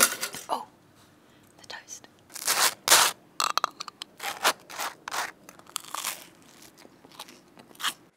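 A knife spreading Vegemite across toast, right up against a clip-on microphone: a series of dry scrapes and crunches, the loudest about two and a half to three seconds in.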